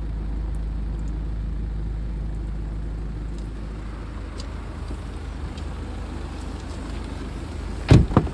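A steady low rumble inside the car, then a sharp, loud thump near the end followed by a smaller knock: a car door being shut.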